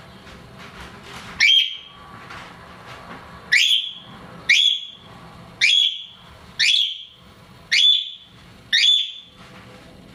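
Timneh African grey parrot whistling: seven short whistles that each sweep up in pitch, the first about a second and a half in, then after a pause roughly one a second.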